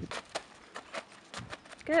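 A horse's hooves stepping across a plastic tarp: a string of short, sharp steps, a few a second.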